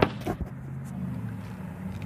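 A sharp knock from the phone being handled and set down, with a few small clicks just after, over a steady low hum.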